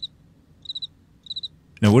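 Cricket-chirp sound effect: three short chirps, each a quick run of high pulses, about two-thirds of a second apart, filling a comic awkward silence.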